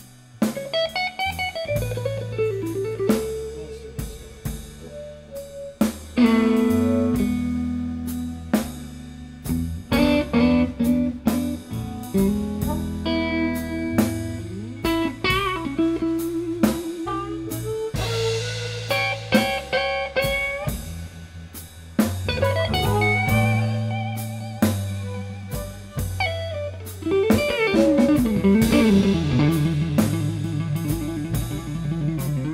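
Live blues band playing a blues number. A lead electric guitar bends notes over bass and a drum kit.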